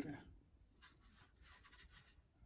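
Near silence with a few faint, short scratchy rubs: plywood and clamps being handled.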